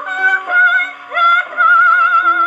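A 1917 Victor acoustic phonograph playing a 1930s German song from a 78 rpm record. A high melody line with wide vibrato sounds over lower held notes, and the sound is thin with no bass.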